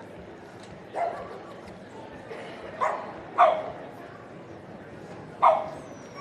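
A dog barking four short, sharp barks, the last two the loudest.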